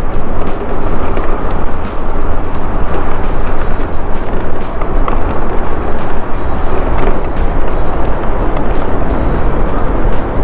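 Loud, steady rush of wind buffeting the camera microphone as a battery-powered scooter rides along a sandy road, mixed with background music.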